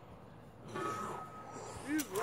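Faint voices, with a thin steady high whine coming in just under a second in.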